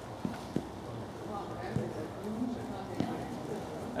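A few short, dull thumps at irregular intervals, with faint distant voices in between.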